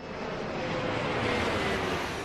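A jet aircraft passing by: a rushing engine noise that swells up, with a faint whine that slowly falls in pitch.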